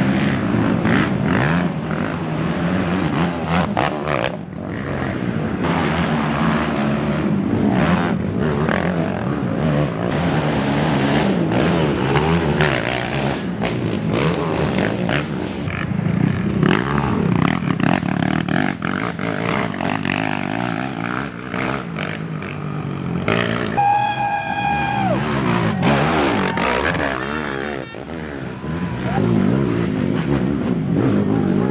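Racing quad ATV engines revving and accelerating, several overlapping, their pitch rising and falling with the throttle. About three-quarters of the way through, a brief, clear higher-pitched tone sounds over them.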